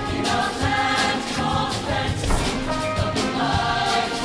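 Show choir singing in full chorus over a live band, with drum and cymbal hits keeping the beat.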